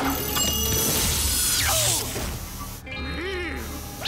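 Cartoon time-freezing effect: a loud rushing, shimmering swell over music that dies away about two seconds in. It is followed by a brief high-pitched squeaky cry from a cartoon hamster.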